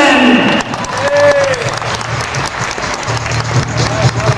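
Audience applauding in the hall, following the end of a man's spoken announcement in the first half second. A steady low drone of music joins near the end.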